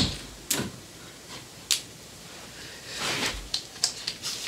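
A few short, sharp knocks and clicks of handling and movement, with a softer rustle about three seconds in.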